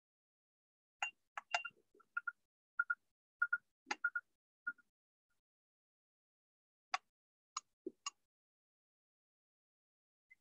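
A scatter of short clicks and light taps from objects being handled close to the microphone, some with a brief ringing note, clustered in the first half and a few more later, with dead silence between them.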